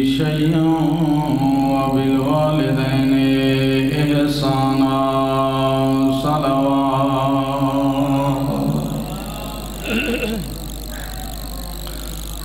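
A man's voice chanting a religious recitation through a microphone and PA, in long, drawn-out melodic notes. The chant stops about three-quarters of the way through, leaving quieter background with one short sound a little later.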